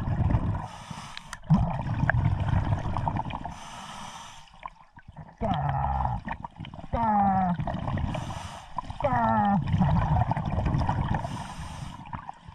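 Scuba regulator breathing underwater: four short hissing inhalations through the demand valve, about every three and a half seconds, each followed by a longer rumbling burst of exhaled bubbles. Around 7 s and 9 s there are two short falling vocal sounds made through the mouthpiece.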